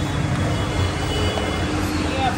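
Steady low rumble and hiss of background noise, with a faint steady hum underneath.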